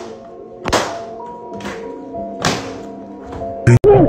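Music with held notes and heavy thudding beats about a second and a half to two seconds apart. Near the end there is a sudden loud burst that cuts off abruptly.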